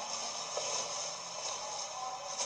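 Steady background hiss with a couple of faint ticks; no clear activity is heard.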